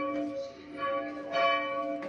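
Church bells ringing: a fresh strike about a second in and another shortly after, each leaving a long ringing hum. The tower's own rope-swung bell is ringing together with a neighbouring church's bells.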